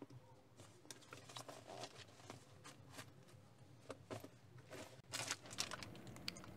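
Faint, irregular rustling and crinkling of packing items being handled, a clear plastic toiletry bag among them, with a louder rustle a little after five seconds in.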